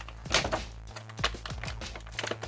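Thin clear plastic bag crinkling and crackling in the hands as an action figure is worked out of it, in short irregular bursts.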